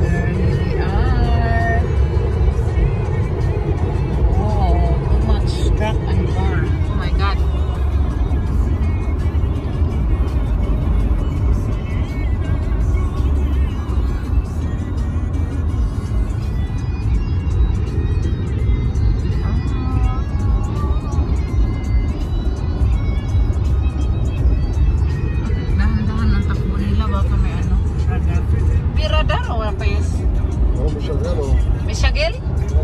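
Steady low road and engine rumble of a BMW car cruising on a highway, heard from inside the cabin. Music with a voice plays over it throughout.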